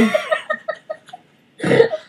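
Women laughing in short bursts over a video call, with a cough near the end.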